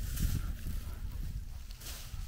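Low, uneven rumble of wind on the microphone, with a short rustle near the end.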